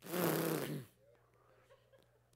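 A man's breathy, blown vocal noise, held for just under a second on a steady low pitch that drops as it fades out.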